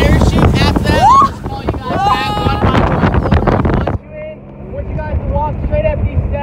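Wind buffeting the microphone and water rushing past a motorboat running fast, with voices calling out over it. About four seconds in it cuts sharply to a quieter deck: a man talking over a low steady hum.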